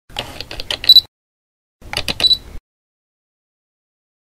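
Camera mechanism sound effect: two short bursts of rapid mechanical clicking, the second a little shorter, each ending in a brief high beep.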